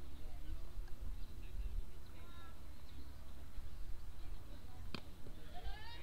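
Wind rumbling on an outdoor microphone, with faint distant voices from the field and stands. About five seconds in comes a single sharp pop, a pitched baseball landing in the catcher's mitt, and a voice rises just after it.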